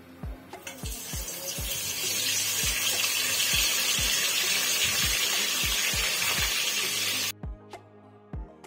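Boiled potato slices going into hot cooking oil in a steel pot, sizzling loudly; the sizzle builds about a second in and cuts off suddenly near the end. Background music with a steady beat plays underneath.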